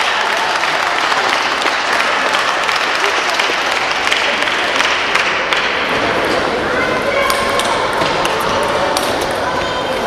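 A table tennis rally: the celluloid ball clicking back and forth off the paddles and table in a large hall, over steady murmur from the watching crowd.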